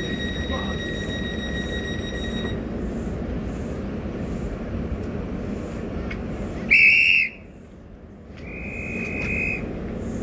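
HST diesel power car idling with a steady drone beside the platform. A steady high tone stops a couple of seconds in. About seven seconds in, a railway dispatch whistle gives one short, very loud blast, followed a second later by a fainter, longer tone.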